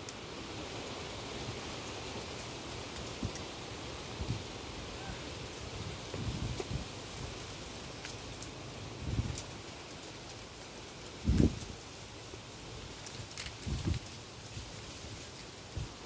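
Steady outdoor orchard ambience, a soft rustling hiss, broken by four brief low bumps, the loudest about two-thirds of the way in.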